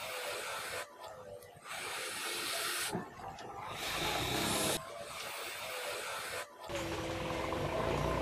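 A person blowing on a hot grilled oyster held in chopsticks to cool it: about four breathy puffs, each a second or so long, with short gaps between them.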